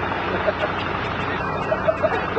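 Suzuki 4x4's engine running steadily, with faint voices over it.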